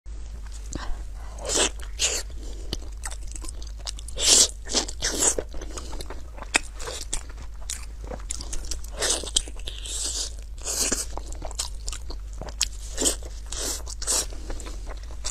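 Close-miked mouth biting and chewing braised, glazed pork head meat: a run of irregular wet bites and chews, the loudest about four seconds in, over a steady low hum.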